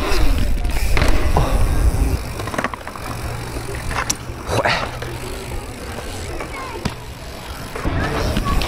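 Mountain bike rolling over a concrete skatepark, with wind rumbling on the microphone, heaviest in the first two seconds. Several sharp clacks of skateboards come through it.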